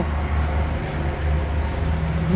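Demolition excavators running, a steady low rumble of their diesel engines.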